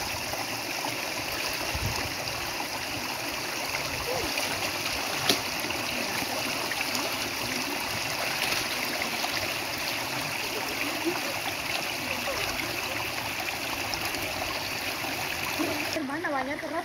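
Shallow river water flowing steadily, with light splashing as clothes are washed and rinsed by hand in it; a single sharp click about five seconds in.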